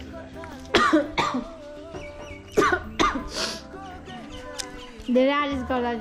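A woman coughing repeatedly in short, sharp bursts, in two clusters during the first half.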